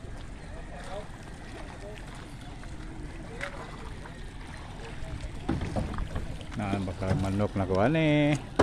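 Open-air harbour noise: a steady low rumble with faint distant voices. In the last couple of seconds it grows louder as people on the incoming outrigger boat call out.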